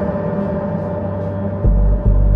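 Electronic dance track: a sustained, many-layered ringing tone fading slowly, then a deep bass hit near the end.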